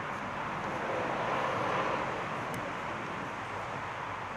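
Steady outdoor hiss of distant road traffic, swelling gently about a second in as a vehicle passes and easing off again.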